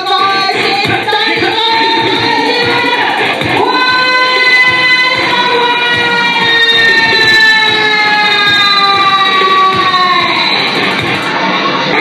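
Live electronic music played on keyboards and synthesizers over a steady beat. About four seconds in, a long held high note starts and slides slowly down in pitch for some six seconds before dropping away.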